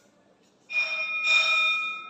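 A bell-like ringing of several steady tones starts sharply about two-thirds of a second in, gets louder just past the midpoint and carries on without a break.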